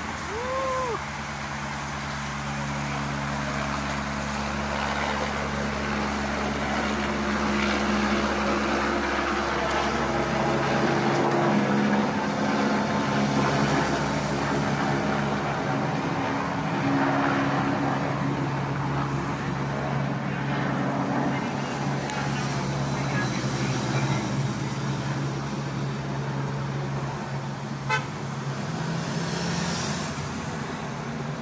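Race convoy cars driving past at low speed, engines running with a steady droning hum and car horns tooting. A sharp click sounds near the end.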